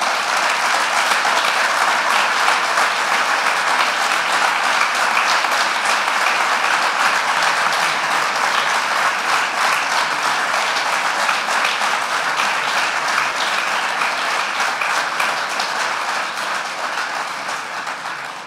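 Audience applauding steadily, the clapping dying away near the end.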